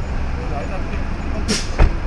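City street traffic noise: a steady low rumble of vehicle engines and tyres, with a short sharp hiss about one and a half seconds in and a low thump just after it. Faint voices sit underneath.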